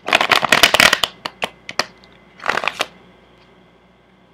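A deck of cards being shuffled by hand: a dense run of quick papery clicks for about a second, a few single snaps, then a second shorter run about two and a half seconds in.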